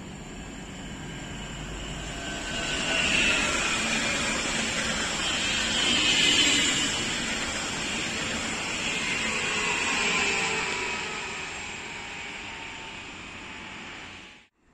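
PKP Intercity ED160 (Stadler FLIRT) electric multiple unit passing close by. Wheel-and-rail noise swells as it nears and fades as it moves away, with whining tones that fall in pitch as it goes by.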